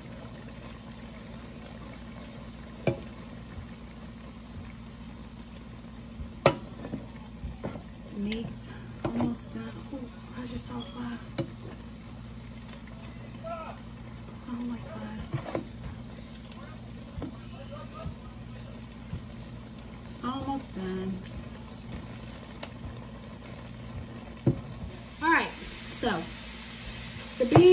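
Ground beef cooking in a large pot, stirred with a wooden spoon: a low steady sizzle over a constant low hum, with occasional sharp clicks and knocks of the utensils against the pot.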